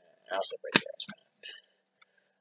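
A man's voice says "right" quietly, followed by a single sharp click.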